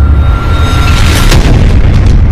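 Loud, bass-heavy cinematic boom sound effect with a deep rumble throughout. A thin steady high tone runs until about halfway through, then a series of sharp cracks follows.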